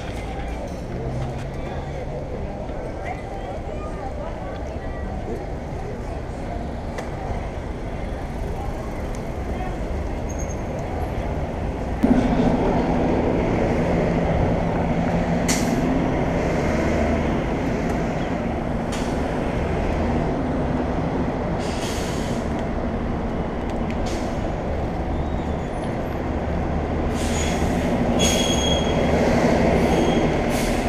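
Wind and road noise on a bicycle-mounted action camera riding through city traffic. About twelve seconds in it suddenly gets louder and a steady low hum from nearby traffic joins, with a few short rattles later.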